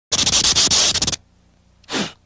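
A burst of scratchy static noise, about a second long, cutting off abruptly, then a short falling swoosh near the end.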